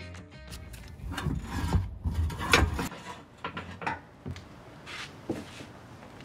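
A Jeep Wrangler JK's rear bumper being worked loose and pulled off the frame: irregular scraping and heavy clunks, loudest about two and a half seconds in, then lighter scattered knocks.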